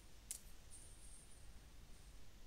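A single faint click from computer input, a mouse button or key, against near silence, with a faint high-pitched whine in the background.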